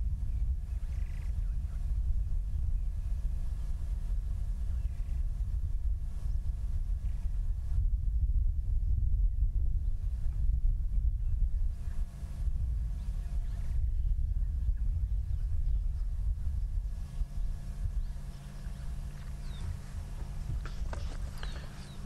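Steady low rumble of bush ambience, with a few faint distant bird calls.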